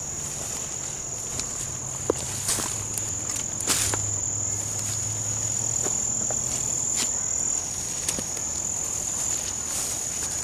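A steady, high-pitched insect trill held on one note, over footsteps through forest undergrowth with a few sharp snaps.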